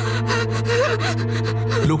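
Sound-effect of a knife blade scraping in repeated strokes over a steady low droning music bed. The drone cuts off just before the end.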